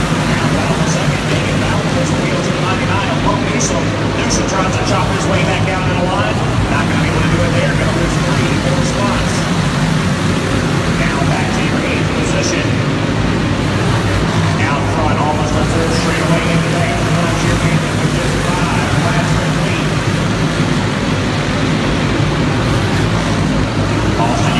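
A field of racing karts lapping together: a steady, mixed drone of many small kart engines inside an indoor arena, with crowd voices underneath.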